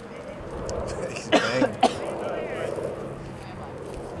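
A person coughing, two quick coughs a little over a second in, over faint chatter from spectators.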